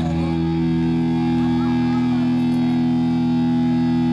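Live rock band holding one sustained chord, with electric guitar ringing steadily and no change of note.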